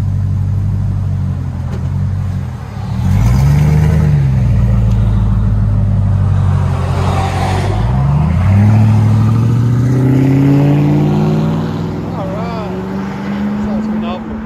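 Ford 5.4L Triton V8 running through a Carven R-Series muffler and 5-inch tip: a steady idle, a short rev that rises and falls about three seconds in, then a slower, longer climb in engine speed over the last six seconds.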